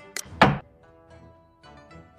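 Xiangqi program's piece-move sound effect: two quick wooden clacks, the second louder, as a piece is moved and set down on the board. Plucked-string background music plays throughout.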